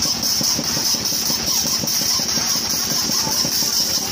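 Small stationary engine running steadily to drive a children's chain-swing ride, with a fast even beat of firing pulses. A steady high hiss runs underneath.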